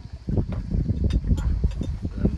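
Wind buffeting the microphone in uneven gusts, with a few light clicks of a metal knife and fork against a glass plate.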